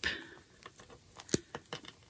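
Knitting needles clicking lightly as stitches are worked: about seven small, sharp clicks spread over the second half, one louder than the rest.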